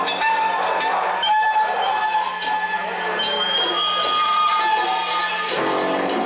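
Live rock band playing a song: held guitar notes over a steady low bass, with sharp crashing beats a little under once a second.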